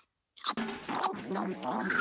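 Cartoon chewing sound effect: a mouthful of salad crunched and munched, with a low, contented mumbling hum going along with it. It begins about half a second in after a short silence.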